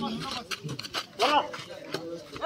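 Men's voices calling out on an outdoor volleyball court, with a short, louder shout a little over a second in.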